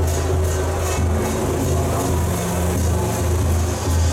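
Loud music with a heavy bass and a steady beat, played through a truck-mounted loudspeaker stack.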